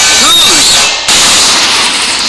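Cartoon soundtrack sound effect: a short burst of voice, then just after a second a sudden loud, noisy hit like a whip crack that carries on as a hiss.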